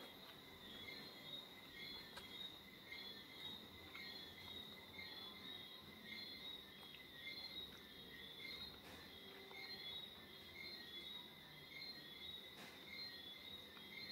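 Near silence: faint room tone with a steady, high-pitched chirping that swells at an even pace.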